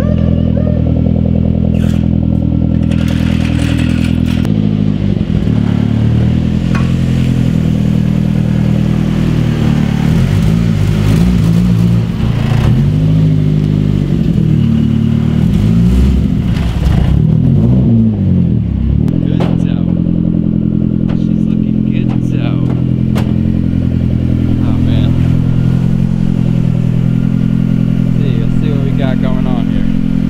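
Nissan 240SX S14's four-cylinder engine running, steady at first, with its pitch rising and falling several times in the middle as it is revved, then settling back to a steady idle.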